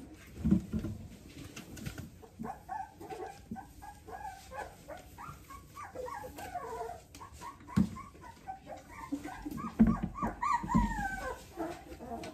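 Young Labradoodle puppies whimpering and yipping, many short high calls in quick succession from about two seconds in. A few dull knocks break in, the loudest near the start and near the end.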